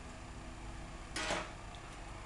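A short rustling scrape about a second in, over a steady low hum.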